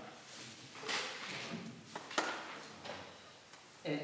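Paper rustling as the pages of a printed piano score are handled and turned, in a few short swishes, with one sharp tap a little after two seconds in.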